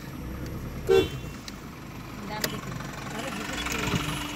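Engine and road noise inside a moving car, with a vehicle horn sounding a long steady note from about two and a half seconds in.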